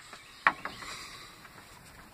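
A single sharp click about half a second in, with a smaller click just after and a brief faint rustle.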